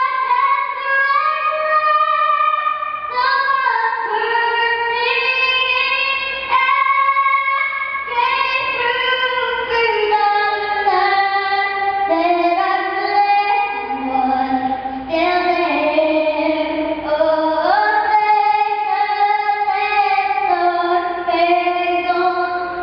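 A six-year-old girl singing the national anthem solo in a big, strong voice, holding long notes that step up and down through the melody.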